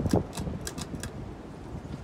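Pull-chain switch of a Hunter Stratford II ceiling fan being worked: a quick string of sharp clicks and chain rattles in the first second, over a low rumble that eases off toward the end.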